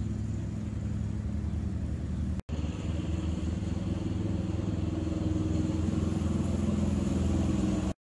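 An engine running steadily, with no revving. The sound drops out for a moment about two and a half seconds in, then carries on a little louder.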